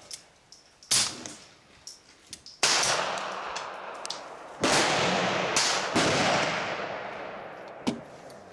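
Suppressed Ruger Mark II Target .22 LR pistol firing single shots. A short crack comes about a second in, then louder reports near three and near five seconds, each trailing a long fading echo that lasts a second or two, with a couple more sharp cracks inside the echo.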